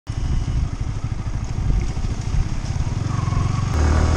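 Yamaha R15 V3 motorcycle under way, its single-cylinder engine running with a steady low rumble.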